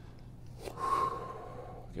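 A man breathing out hard through his mouth under exertion: one long exhale of about a second, with a faint whistle in it.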